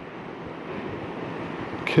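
Distant waterfall: a steady, even rush of falling water.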